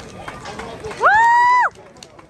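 One loud, high-pitched whoop from a spectator, about two-thirds of a second long: it sweeps up, holds steady and drops off. Faint voices sound around it.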